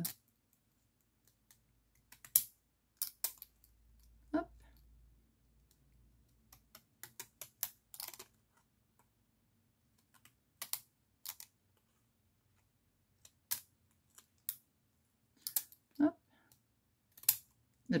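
Pinking shears snipping through a paper label: a scattered series of short, crisp snips at irregular spacing, with pauses between cuts.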